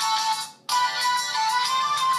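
Smartphone ringtone playing for an incoming call: a melody of bright pitched notes that breaks off for a moment about half a second in, then starts its loop again.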